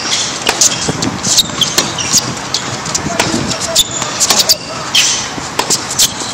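Tennis rally on an outdoor hard court: a string of sharp pops from racket strikes on the ball and the ball bouncing off the court, with brief squeaks from sneakers on the hard surface.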